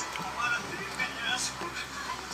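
Indistinct voices with some music in the background.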